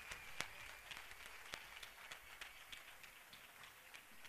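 Audience applause dying away into scattered, quiet claps that thin out and grow fainter, with one sharper clap about half a second in.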